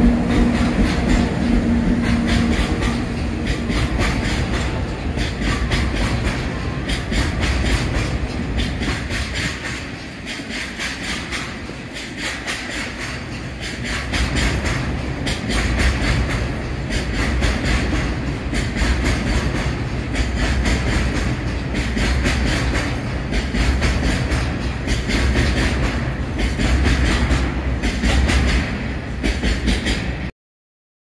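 A JR Freight gasoline train of Taki tank wagons running past on electrified track: a short electric-locomotive hum at first, then a steady clickety-clack of wagon wheels over rail joints, quieter for a few seconds in the middle and louder again toward the end.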